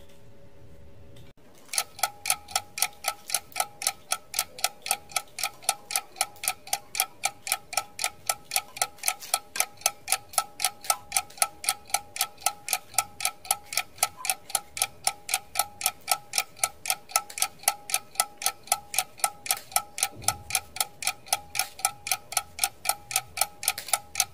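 Clock-ticking sound effect: an even, rapid run of short pitched ticks, about four a second, starting about a second and a half in.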